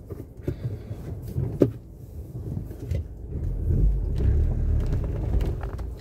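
Car or truck rolling slowly over rough ground, heard from inside the cab: a low rumble that grows louder about halfway through, with a couple of sharp clicks or knocks in the first two seconds.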